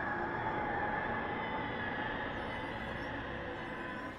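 Sustained background score from the anime episode: a steady drone with faint held tones, slowly fading.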